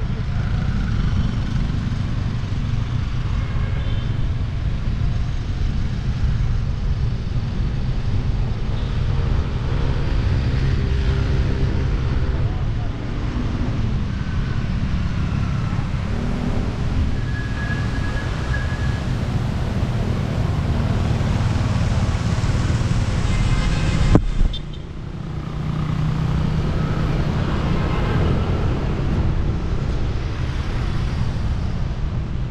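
City road traffic heard from a moving bicycle: a steady low rumble of wind and road noise, with cars and motorcycles passing. A single sharp click late on, after which the sound drops briefly.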